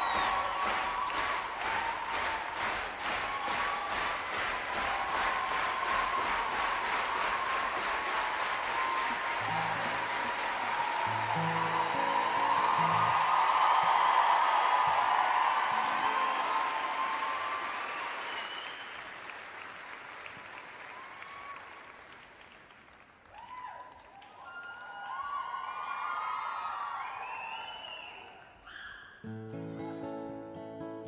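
Large concert audience applauding, the clapping falling into a steady rhythm of two or three claps a second, with a few low held notes from the band midway. The applause dies away after about twenty seconds, scattered whistles and cheers follow, and music starts again just before the end.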